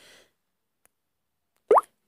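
Near silence, then a single short, sharp pop with a quick rising pitch near the end.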